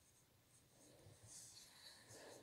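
Near silence, with faint rustling and scratching of yarn being worked with a crochet hook, a little stronger in the second half.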